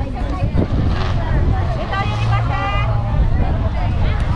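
Voices of people talking in the background over a continuous low rumble, with a louder voice about halfway through.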